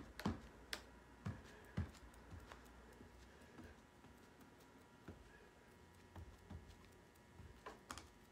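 Faint, steady buzz of fluorescent lights in a quiet room, with a few scattered light clicks and taps.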